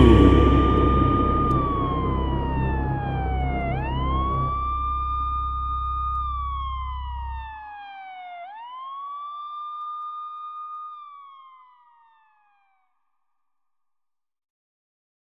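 A siren wailing in slow rises and falls, each cycle about five seconds long, fading away over its third fall. Low music tones die out under it about halfway through.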